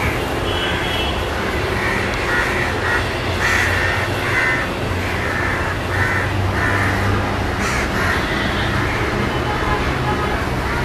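Crows cawing, many short harsh calls following one another unevenly, over a steady low rumble.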